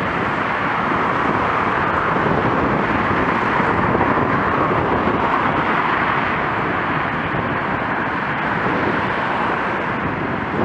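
Steady rushing wind noise on a bike-mounted camera's microphone while cycling, mixed with the road noise of cars passing close by.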